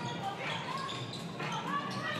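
A basketball being dribbled on a wooden indoor court, with voices and the general murmur of a large hall.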